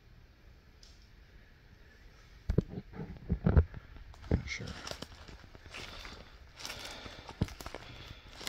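Footsteps on dry leaf litter and dead palm fronds: irregular crunches and snaps starting about two and a half seconds in, after a quiet start.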